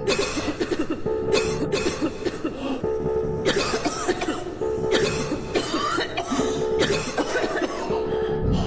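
A person coughing over and over, a fit of repeated hacking coughs several times a second, over background music with a repeating held note.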